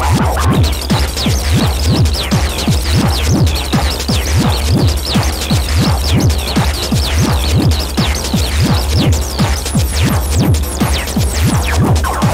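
Electronic dance music, a section with no kick: a steady deep bass drone under an even low throbbing pulse, about three to four a second, with quick high sweeping synth tones on top.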